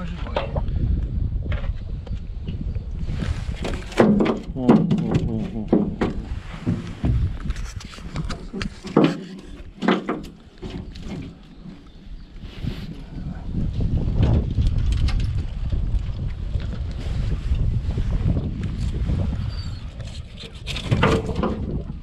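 Handling noise from a tangled nylon gill net being pulled and cut away from a fish in an aluminium boat: rustling with scattered knocks. Wind rumbles on the microphone throughout, and a few brief low-voiced mutterings come in.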